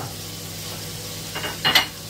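Shrimp and tofu frying in oil in a hot frying pan, a steady sizzle, with a brief louder sound about one and a half seconds in.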